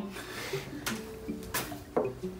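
A few short knocks and handling noises from instruments being set down, over quiet room noise.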